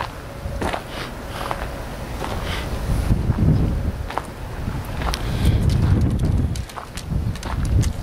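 Footsteps on gravel and dirt, a string of short crunching clicks, over a low uneven rumble on the microphone that swells twice.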